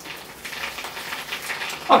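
Water pouring from a watering rose onto a potted fig tree's leaves and soil: a steady splashing.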